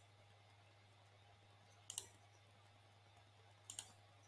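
Two faint computer mouse clicks, each a quick double click of press and release, about two seconds apart in near silence: the photo gallery being clicked on to the next picture.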